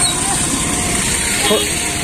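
Busy street traffic: a steady din of motorcycle and auto-rickshaw engines running past, with a brief voice about one and a half seconds in.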